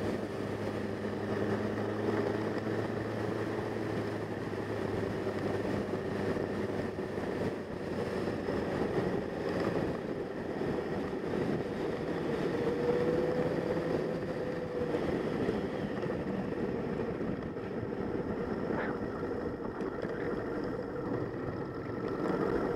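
Motorcycle engine running at a steady cruise, mixed with constant wind rush on the microphone.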